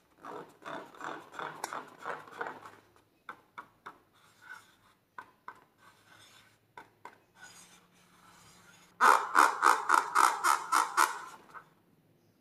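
Fingers rubbing and squeezing a filled latex balloon, making quick squeaky rubbing strokes. These thin out to scattered squeaks and creaks, then about three-quarters of the way in give way to a loud, rhythmic run of about a dozen squeaks, roughly five a second.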